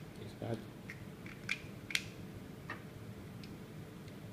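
Small copper and brass parts of a vape mod clicking and tapping together as they are handled and fitted, about half a dozen short sharp clicks with the loudest about two seconds in.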